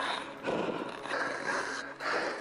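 A mountaineer breathing hard in rapid, heavy gasps, about two breaths a second, the sound of hard exertion in thin high-altitude air.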